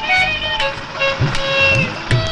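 Film background music: held melodic notes over repeated drum strokes whose low notes bend in pitch, with vehicle traffic underneath.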